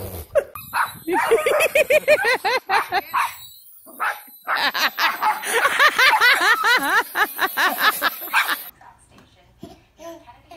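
A dog barking rapidly, about five short yaps a second, in two long runs with a brief pause between them.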